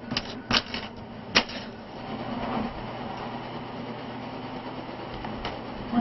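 Plastic sheeting stretched over a window crackling and popping under a hand, a few sharp crackles in the first second and a half, then a steady low hum.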